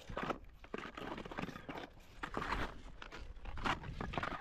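Faint, irregular crunching and rustling from a ski tourer's gear and clothing moving on snow.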